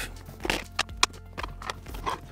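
A few short, light clicks and taps of small tools and clips being handled and set down on a desk, over faint background music.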